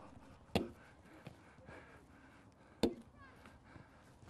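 A ball smacking sharply against goalkeepers' gloved hands twice, about two seconds apart, as it is passed and caught around the group.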